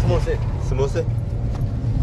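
Steady low rumble of a van's engine and road noise, heard from inside the passenger cabin while it drives.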